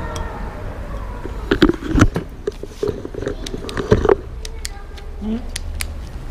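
Sharp clicks and knocks of a shift box (click box) being fitted and screwed onto the rear axle of a SRAM 7-speed internal gear hub, over a low steady rumble.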